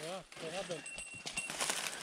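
Footsteps crunching and rustling through dense, dry cattail stalks, a quiet run of crackles that grows in the second half. A faint voice is heard near the start.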